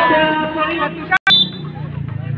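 A raised voice shouting loudly over crowd noise, with drawn-out, wavering calls. About a second in it breaks off in a brief audio dropout, and a quieter low hum follows.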